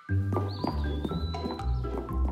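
Cartoon background music starts up: a low bass line under short repeated notes. A thin high tone slides down and holds for about a second, starting about half a second in.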